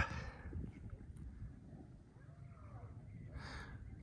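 Quiet open-air ambience: a low wind rumble on the microphone, a faint distant voice around the middle, and a short breathy puff near the end.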